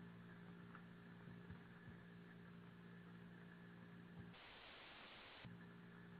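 Near silence: a faint steady electrical hum and hiss from an open microphone.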